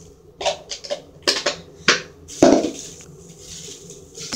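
Plastic slime tubs handled and knocked on a hard surface: a series of short sharp clicks and knocks, with a heavier knock about two and a half seconds in.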